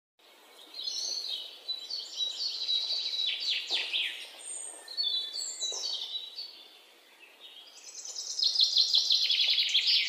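Birds chirping and calling, with quick falling whistles, a short lull, then a run of rapid trilled notes near the end.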